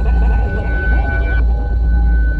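Experimental electronic music: a heavy low drone under steady high held tones, with faint gliding pitches among them.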